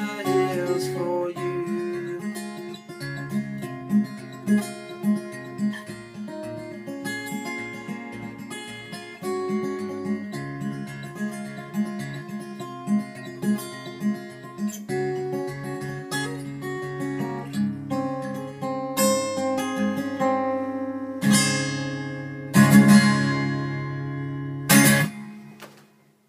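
Acoustic guitar playing the song's closing instrumental passage: picked notes over a repeating bass pattern, ending in three loud strummed chords that ring briefly, the last one damped about a second before the end.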